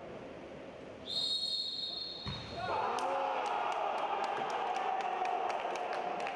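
A referee's whistle blown once for about a second, starting about a second in; then spectators cheering and shouting, with many sharp repeated beats.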